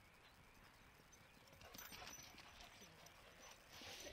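Faint footfalls and scuffing on loose dirt from a dog moving close by, starting about halfway through.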